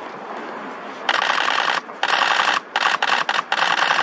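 A camera shutter firing in rapid continuous bursts close to the microphone. It starts about a second in and comes as several bursts with short breaks between them.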